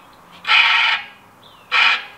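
Bicycle rim scrubbing against the truing-stand caliper as the wheel spins, two rasping scrapes about a second and a quarter apart, once per revolution: the wheel is out of true at that spot.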